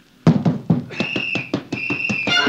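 Radio-drama sound effects of a fist fight: a rapid run of blows and thuds, with two short shrill blasts of a police whistle, one about a second in and one near the end.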